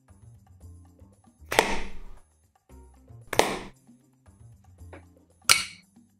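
Background music with three sharp hits, about two seconds apart and each fading over about half a second: tiny arrows loosed from a miniature bow and striking their targets.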